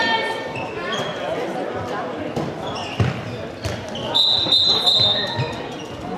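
Handball being played in a reverberant sports hall: ball thumps, with a sharp impact about three seconds in, and shouting voices. A referee's whistle sounds as one steady high blast of about a second, about four seconds in.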